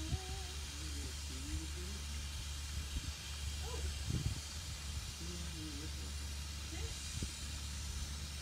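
Steady hiss with a constant low rumble beneath it, faint murmured voices, and a few brief soft low bumps; no music is playing.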